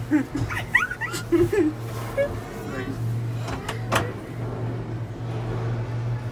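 A small child making high, sliding whiny vocal sounds for the first second and a half, over a steady low hum inside a gondola cabin, with two sharp knocks about four seconds in.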